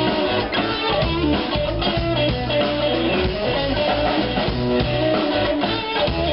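Live blues-rock band playing an instrumental passage without vocals: electric guitars over a drum kit.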